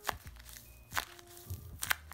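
A small tape-covered paper squishy, stiff enough that it hardly squishes, squeezed in the hand: a few sharp crackles of tape and paper, about a second apart.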